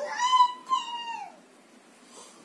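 A young child's high-pitched, drawn-out vocal cry, made in play: it rises sharply, holds, and falls away, lasting about a second and a half.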